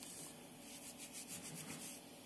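Faint rustling handling noise, a soft scratchy rubbing with a run of light ticks in the second half.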